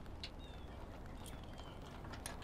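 Quiet background hiss with a couple of faint, short clicks near the start as a metal pod-light mounting bracket is handled into place against the hood hinge bolt.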